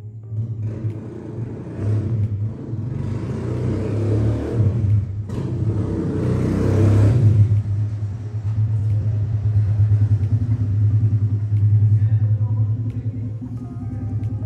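A low engine rumble with a rapid, even pulse. It grows louder to a peak about seven seconds in, then runs on steadily.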